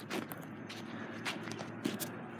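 Footsteps of a person walking: a few soft, irregular steps over a faint steady background noise.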